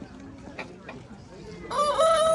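Rooster crowing: one loud, drawn-out call beginning near the end, after a stretch of faint background sound.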